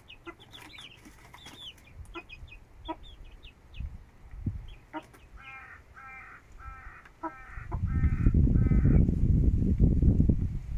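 Hen and chicks calling while feeding. Short high chick peeps come in the first couple of seconds, then a run of about six even clucking calls past the middle. Near the end a loud low rumbling noise comes in and drowns them out.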